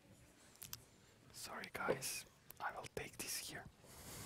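Quiet whispered speech picked up by a microphone, in short breathy bursts without a clear voice, after a couple of small clicks about half a second in.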